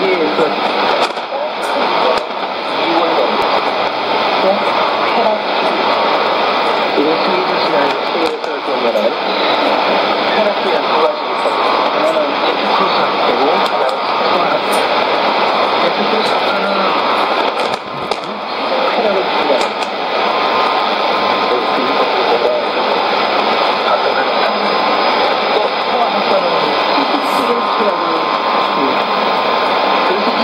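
Shortwave AM broadcast of the Voice of Wilderness in Korean on 7375 kHz, heard through a Sony ICF-2001D receiver's speaker: a voice talking in Korean under steady static and hiss, with the thin, narrow-band sound of AM shortwave reception.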